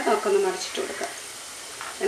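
Onion pakoras sizzling as they deep-fry in hot oil in a pan, a steady hiss that is heard alone once the voice stops, under a second in.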